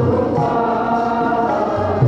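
Group devotional singing with sustained instrumental notes and occasional low drum strokes.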